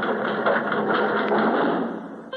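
A steady, fast mechanical clatter over a low steady hum, a machinery sound effect, fading out near the end.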